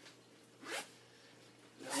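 Backpack zipper being pulled open: a short zip about two-thirds of a second in, then a longer, louder zip near the end.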